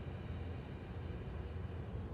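A low, steady background rumble with no distinct events: room tone.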